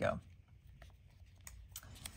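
Faint handling of paper ticket stickers on a wooden tray, with a few light taps in the second half.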